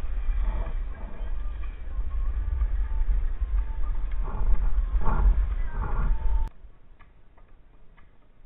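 Wind buffeting the microphone of a body-worn camera on a moving skier, with skis scraping over packed snow: a heavy low rumble that swells around four to six seconds in, then drops off suddenly to a faint hiss about six and a half seconds in.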